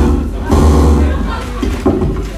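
Loud experimental noise music: a dense, distorted drone of stacked low tones with heavy bass, surging again about half a second in and easing off near the end.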